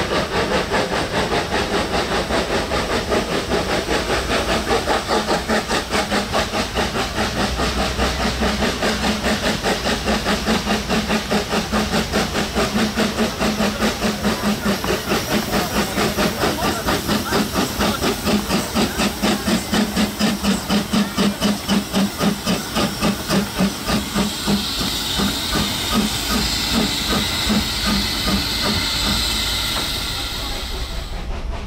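SLM H 2/3 rack steam locomotive working hard uphill, pushing its carriage, with a fast, even chuffing from its exhaust of about three beats a second. Near the end the beats fade and a steady hiss of steam takes over.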